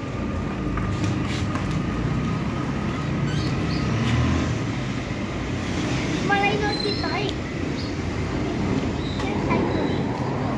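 The small plastic wheels of a child's bicycle with training wheels and a toddler's ride-on toy roll over rough concrete, making a steady rumble. A brief higher squeak or cry comes a little past the middle.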